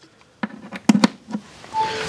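A few clicks and knocks of a charging cable being plugged in and handled, then a short electronic beep near the end.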